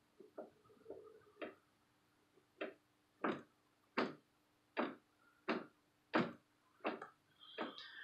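Front axle of a Kubota G4200 garden tractor knocking in its pivot as it shifts back and forth: a few scattered knocks, then a regular series of sharp knocks about every 0.7 s. The loose play is taken for a worn axle bushing.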